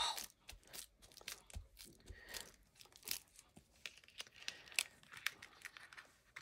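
Faint rustling and crinkling of paper being handled and pressed down, with scattered small clicks and taps.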